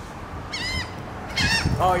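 Laughing gulls calling overhead: two short, high calls about a second apart, then a person's brief "oh" near the end.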